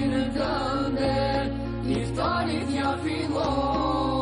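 Ilahi (Islamic devotional song): voices singing an ornamented, chant-like melody over steady, held low backing tones that shift in pitch a couple of times.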